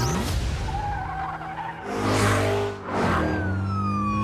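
Movie-trailer soundtrack: a music score mixed with car sounds. A rush of noise comes about halfway through, and a wail falls in pitch near the end.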